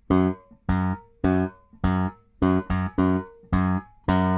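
Electric bass guitar played fingerstyle, alternating index and middle fingers, repeating one fretted note, F# on the fourth fret of the D string, in a syncopated rhythmic figure. There are about eight short, detached notes, each cut off quickly before the next.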